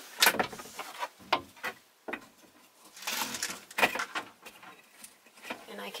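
A vintage RV's back window being unlatched and pushed open on its hinge: a string of separate knocks, clicks and short scraping rattles from the window frame.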